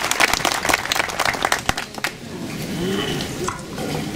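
Seated audience applauding with many hands, the clapping thinning out and dying away about halfway through, leaving faint low voices.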